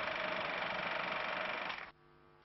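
Steady hiss and hum with no speech, fading out shortly before the end.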